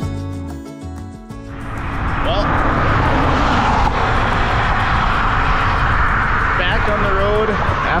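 Acoustic guitar music stops about a second and a half in, cut to strong wind rushing and buffeting on a camera microphone outdoors. A voice comes in briefly near the end.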